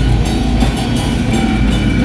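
Live death metal band playing at full volume: distorted guitars and bass over a drum kit, with sharp drum hits about three times a second.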